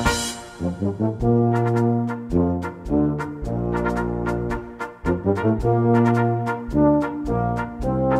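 A small brass ensemble plays a traditional Bavarian-Bohemian wind-band piece in held chords over a moving bass line, with percussion strokes keeping the beat. A cymbal crash fades away over the first second.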